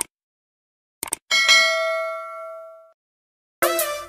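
Mouse-click sound effects, then a single bell ding that rings out for about a second and a half, as in a subscribe-and-bell notification animation. Music begins near the end.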